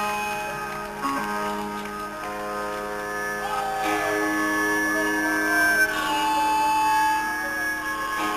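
Live rock band's electric guitars playing long, held, ringing notes, a slow song intro with a few notes bending in pitch and no drum beat.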